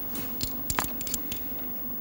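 A few light, sharp clicks and taps of poker chips and cards being handled on the table, over a steady low hum.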